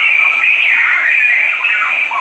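A steady, high-pitched electronic tone that starts abruptly and holds for about two seconds, wavering slightly in pitch.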